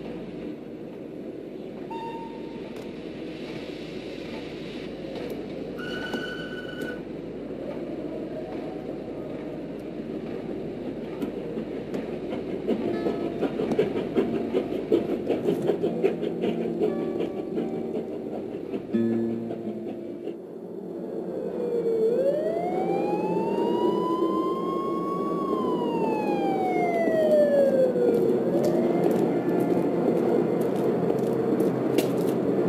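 A steady wash of city noise, then about two-thirds of the way in a siren wails: a slow rise in pitch, a long fall, and the start of another rise near the end.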